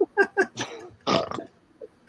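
A man laughing: three quick short bursts, then two longer ones around the middle, trailing off before the talk resumes.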